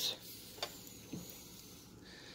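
Faint handling of steel motorized-bicycle connecting rods on a plastic kitchen scale: one light click a little over half a second in, then a fainter tap.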